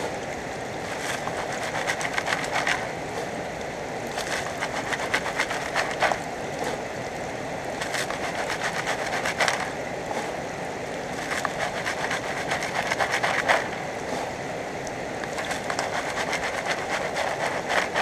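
River gravel rattling in a plastic gold-panning classifier sieve as it is shaken over a bucket, in repeated bursts of rapid clicking, sifting the fines out of the pay dirt for the sluice. A steady rush of river water runs underneath.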